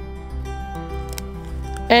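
Background music: a gentle melody of held notes.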